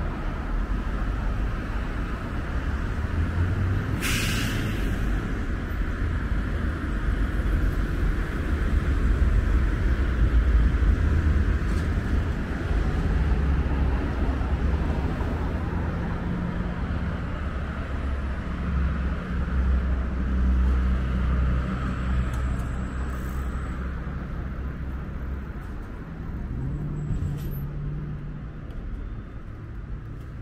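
City road traffic passing: car and heavy-vehicle engines and tyre noise, with a short sharp hiss of air brakes about four seconds in.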